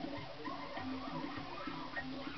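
Television audio playing in a small room: a documentary's background music between lines of narration.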